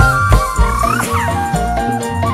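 Live band music without singing: a sustained melody over a steady bass and drum beat, the melody sliding up in pitch about halfway through and then dropping.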